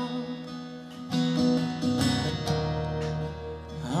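Acoustic guitar strummed in an instrumental passage between sung lines, chords ringing with strokes about every half second; a singing voice comes in right at the end.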